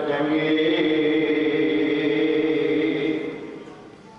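A man's voice chanting one long held line of Sikh prayer at a steady pitch, fading away about three seconds in.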